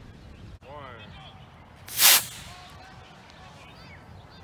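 Micro Green Machine model rocket's small motor igniting and burning out in a single loud whoosh lasting under half a second, about two seconds in. Birds chirp in the background before and after.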